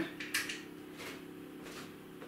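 A single light switch click about a third of a second in, turning the room light off, then quiet room tone with a faint steady hum.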